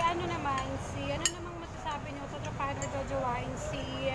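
Spoons and forks clinking against plates during a meal, with a sharp clink about a second in, under low conversation.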